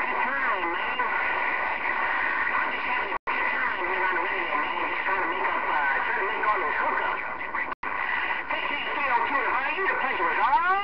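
Galaxy CB radio receiving a busy channel: steady static with faint, garbled voices of distant stations warbling up and down in pitch. The audio drops out for an instant twice.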